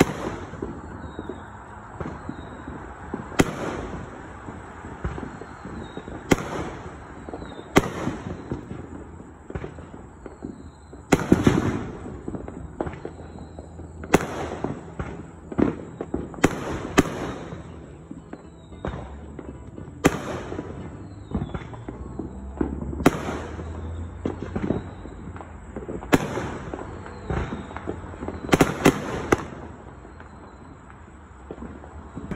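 Aerial firework shells bursting, about a dozen sharp bangs every two to three seconds, some followed by crackling, over a steady background din.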